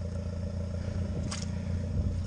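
Allis-Chalmers WD tractor's four-cylinder engine idling steadily, with a short rustle of the camera being handled about a second in.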